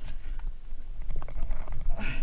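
Scattered knocks, scrapes and clicks of a person hauling himself and a waterproof bag out through the broken hatch of a wrecked boat, over a low rumble.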